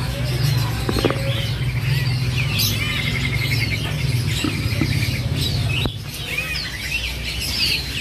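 Many caged songbirds chirping and calling at once, a busy mix of short whistled notes with a brief rapid trill about three seconds in, over a steady low hum.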